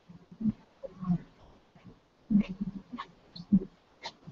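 A domestic cat right at the microphone making soft, irregular low sounds, with a few sharper clicks a little past the middle.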